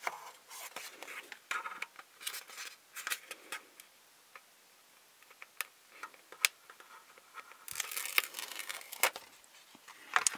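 Paper sticker sheet rustling and crinkling as a sticker is peeled from its backing and pressed onto a small plastic toy counter, with scattered small clicks. A quieter pause in the middle, then a denser crinkly stretch near the end.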